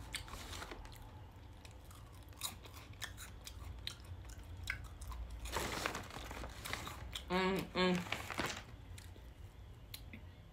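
Close-mouthed chewing of crunchy puffed mini rice cake bites: soft crunching with small crisp clicks, and two short hummed 'mm' sounds a little past the middle.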